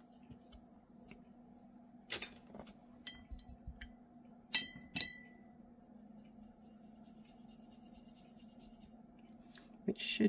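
Paintbrush knocking against a white ceramic mixing palette while paint is mixed in a well: a few light clinks with short ringing. The two loudest come about half a second apart, a little before the middle.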